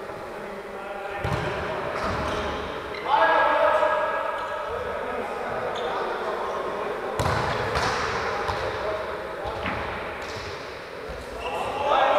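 Football being kicked and bouncing on a wooden sports-hall floor, several sharp thuds echoing in the large hall, with players shouting to each other, loudest about three seconds in and near the end.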